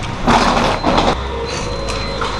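Two brief bursts of rustling handling noise, then the steady low hum of a hotel elevator car with a faint thin high whine over it.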